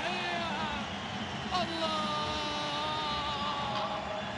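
An excited football commentator's voice holding long, drawn-out sung notes. A new one starts sharply about one and a half seconds in and is held, slowly falling, until near the end. Stadium crowd noise runs steadily underneath.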